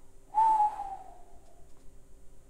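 A man whistles one descending note, a "whew" of reaction, beginning with a breathy puff about a third of a second in and gliding down for about a second.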